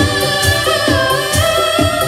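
A group of female singers singing a Bengali song together into microphones through the PA, holding long notes over a band with a steady beat.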